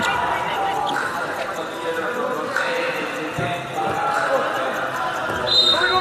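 Basketball bouncing on a hard court during live play, among players' shouts and crowd voices in an arena hall. A short, high-pitched squeak comes near the end.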